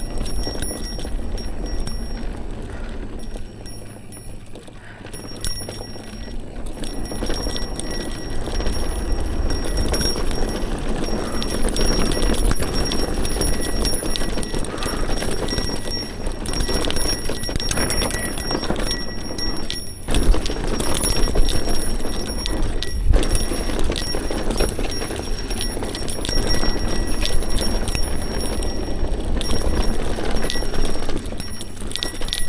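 Mountain bike descending a fast, bumpy dirt singletrack: a continuous, irregular rattling and clattering of the bike over rough ground, with tyre noise and wind buffeting the handlebar-mounted camera's microphone. It gets louder after the first few seconds as the bike picks up speed.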